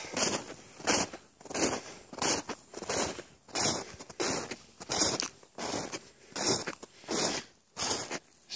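Footsteps crunching on hard-packed snow, a steady walking pace of about one and a half steps a second.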